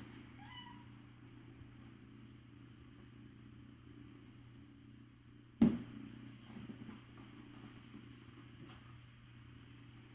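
Kittens mewing faintly near the start, then one sharp knock about halfway through, over a steady low hum.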